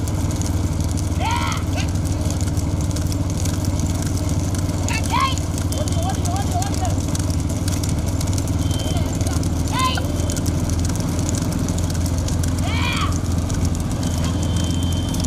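A pack of motorcycles runs steadily close behind a racing bullock cart. Short, loud shouts from the riders rise over the drone of the engines about every four seconds, urging the bulls on.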